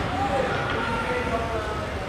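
Distant, indistinct voices calling out in an ice-hockey rink, over the rink's steady low hum.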